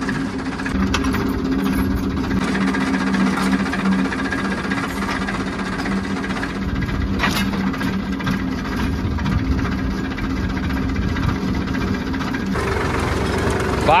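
Tractor engine running steadily with a low hum as it pulls a disc harrow through wet soil. The sound shifts about a second before the end.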